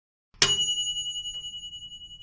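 A single bell ding, a notification-bell sound effect, struck about half a second in and ringing on with a fast waver as it slowly fades.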